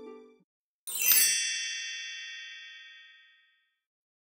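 A bright, sparkly chime sound effect comes in about a second in, several high ringing tones that fade out over about two and a half seconds. Just before it, the last note of a short musical sting dies away.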